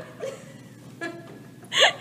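A few brief vocal sounds from a person, then a short, sharp, loud laugh-like yelp near the end.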